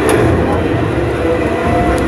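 Wooden roller coaster train climbing the lift hill: a steady mechanical rumble and clatter of the cars on the track.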